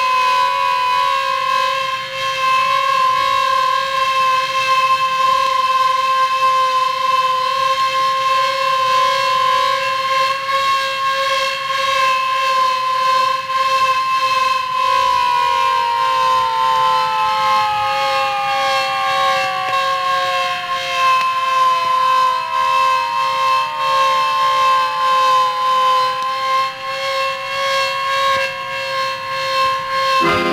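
Air-raid siren sounding one loud steady tone; about halfway through, part of the tone splits off and slides slowly down in pitch while the rest holds.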